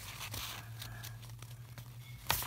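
Faint rustle of a sheet of printer paper being folded over in half, over a steady low hum.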